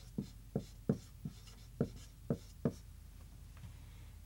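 Marker writing on a whiteboard: about seven short strokes in the first two and a half seconds, then it stops.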